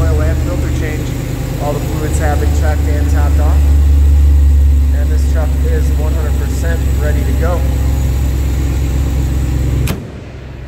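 A 6.4-litre Hemi V8 idling under an open hood, a steady low rumble, running very smooth.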